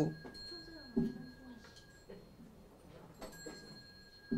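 Faint voices, with the thin, steady high ringing of a small Buddhist ritual bell fading under them; the ringing stops about two seconds in and comes back with a light strike a little after three seconds.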